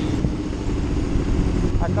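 Honda Hornet motorcycle engine running steadily as it is ridden slowly through traffic, with wind rumble on the microphone.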